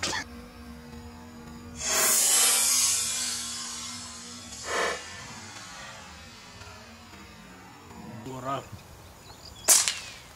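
A pigeon's wings flapping and clattering among twigs, a noisy burst about two seconds in that lasts about two seconds and fades, with a shorter flurry a little later. A single sharp crack near the end.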